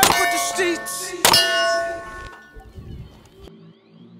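Two hits on steel shooting targets about a second and a quarter apart. Each is a sharp metallic clang that keeps ringing and fades, and the ringing has died away by the second half.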